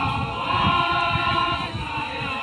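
A group of voices singing or chanting together in long, held notes, the kind of choral chant heard at a Toraja funeral procession.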